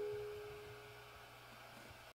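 The last ukulele chord of a pop song ringing on and dying away into near silence.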